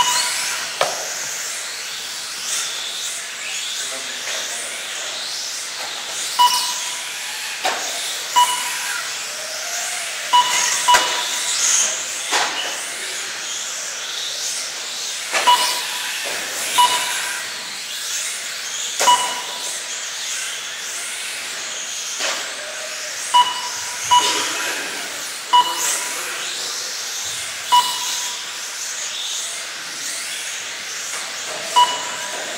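Small 1/18-scale electric RC cars racing on a carpet track: a steady high whine and hiss from the motors and tyres, with short electronic beeps from the lap-timing system every second or two as cars cross the line, and scattered sharp knocks as cars strike the plastic track boards.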